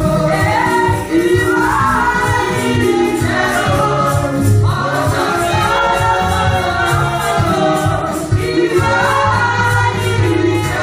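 Women's gospel worship group singing together into microphones, amplified through a PA, over backing music with steady bass notes and a regular beat.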